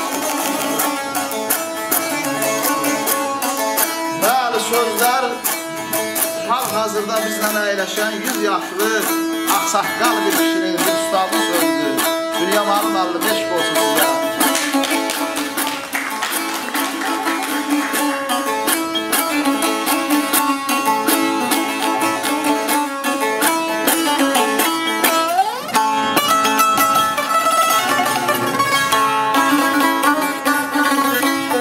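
Azerbaijani saz played with rapid, continuous strumming: a fast melody over steady ringing drone strings, in the style of ashiq music.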